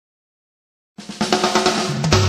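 Silence for about a second, then a drum kit opens the song with a quick snare-drum fill, about eight hits a second.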